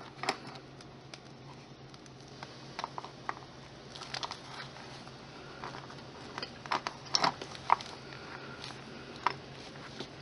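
Faint handling noise of hands pressing a polymer clay tree onto a stone: scattered light clicks and taps, a couple of them louder about seven seconds in, over a low steady hum.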